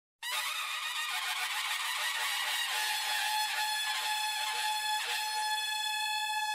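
A conch shell (shankh) blown in one long, steady note that starts just after the beginning and holds its pitch throughout.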